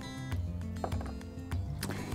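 Soft background music with sustained notes over a low bass line.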